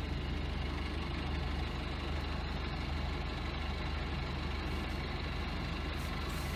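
Sailing yacht's engine running steadily as the boat motors along, a constant low drone with a fine, even pulse.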